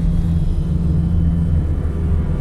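Car driving along a road, heard from inside the cabin: a steady low engine and road rumble, with a steady hum that drops out near the end.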